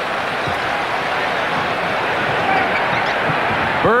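Steady crowd noise from a packed basketball arena, with a few thuds of a basketball bouncing on the hardwood court.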